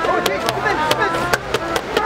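Hands clapping in a quick, uneven rhythm over a crowd's voices.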